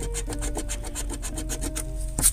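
A coin scraping quickly back and forth across the scratch-off coating of a paper lottery ticket, in even rasping strokes about ten a second.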